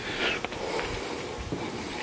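Faint clicks and light knocks from the camera being handled, with a short breath near the start.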